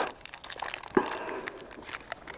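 Plastic ration packaging crinkling and rustling as it is handled, most likely the wrapper of the chocolate bar being opened, with a sharper crackle about a second in.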